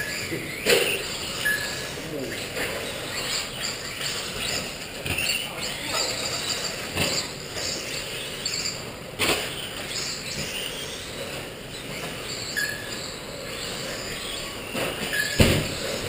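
Electric 2wd RC buggies racing on an indoor dirt track: a high motor whine that rises and falls as the cars accelerate and brake, with a few sharp knocks from landings or hits against the track boards.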